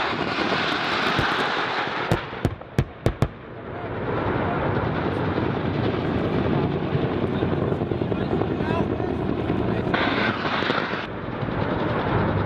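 Steady attack-helicopter rotor and engine noise, broken about two seconds in by five sharp bangs of weapons fire in quick succession.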